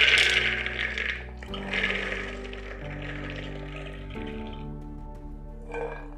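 Soaked dried peas poured from a steel bowl into an aluminium pressure cooker: a dense pattering rattle of many small hard peas on metal, loudest at the start, breaking off about a second in and resuming until about four and a half seconds in. Background music with steady tones plays underneath.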